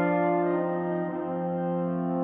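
Orchestra playing a slow passage of long held notes.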